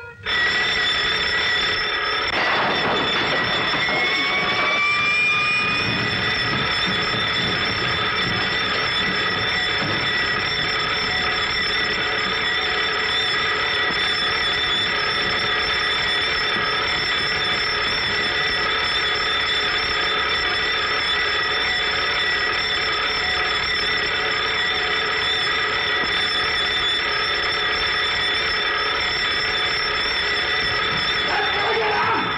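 Electric alarm bell ringing continuously, cutting in suddenly and holding at a steady level. A brief rising whine sounds over it a few seconds in.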